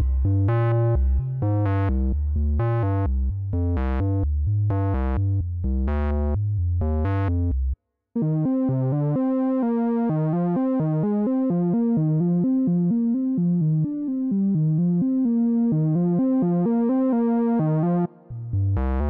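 A VCV Rack software modular synthesizer patch playing a repeating sequence of pitched synth notes over a heavy bass. Just before eight seconds in the sound cuts out for a moment. It comes back as a steadier melodic line of changing notes without the deep bass.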